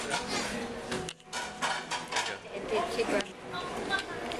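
Restaurant dishes and cutlery clinking and clattering in short, scattered clicks, over background chatter, with a laugh near the end.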